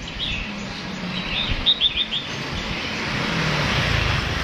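Caged songbirds chirping: a short chirp near the start, then a quick run of four short chirps about halfway through. Street traffic noise underneath grows louder near the end.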